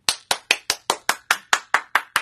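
One person clapping hands quickly and evenly, about five sharp claps a second.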